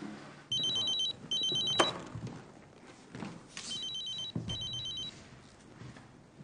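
Telephone ringing with a warbling electronic double ring, heard twice about three seconds apart. A single sharp click comes at the end of the first double ring.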